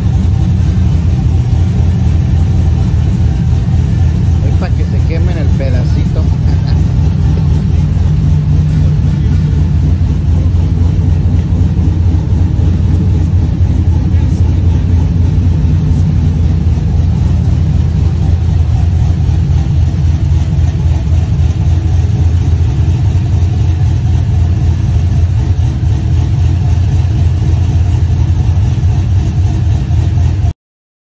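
Pickup truck engine idling with a steady low rumble. A brief higher-pitched sound rises and falls about five seconds in.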